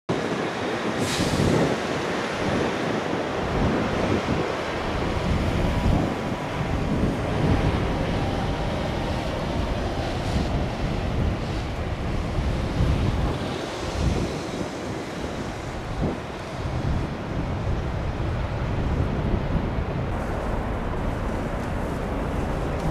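Wind buffeting the microphone in irregular gusts, over a steady outdoor rumble of distant traffic.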